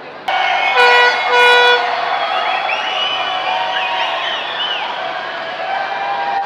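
Two short blasts of a hand-held air horn, the second a little longer. Around them a large crowd shouts and whoops.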